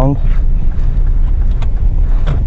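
Hyundai Creta driving slowly over a rough street, heard from inside the cabin: a steady low rumble of engine and tyres, with a faint tick or two.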